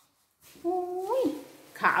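Speech only: a woman's drawn-out exclamation, 'oh, white', rising in pitch at its end, then she starts talking again near the end.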